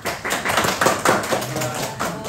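A small group clapping: many quick, irregular hand claps, loudest in the first second and a half, with voices mixed in.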